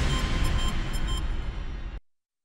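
News bulletin closing theme music: the last hit rings out over a low rumble and slowly fades, then stops dead.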